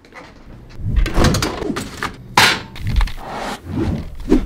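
Thuds, knocks and rustling from a person moving about and handling things, starting about a second in, with one loud sharp noise about two and a half seconds in.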